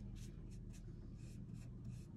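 Paintbrush bristles stroking paint across a wooden pumpkin cutout: short, scratchy swishes about four a second, over a faint steady low hum.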